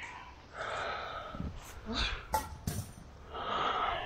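A person breathing hard, close to the microphone, winded from handling a heavy mattress: two long exhales, about half a second in and again near the end, with a few light knocks between them.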